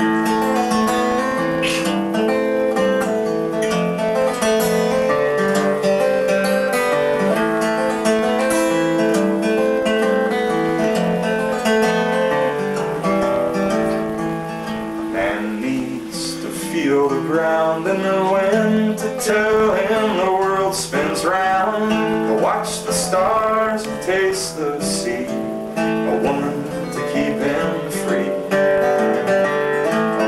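Solo acoustic guitar playing a song's accompaniment, a steady run of picked and strummed chords with ringing sustained notes.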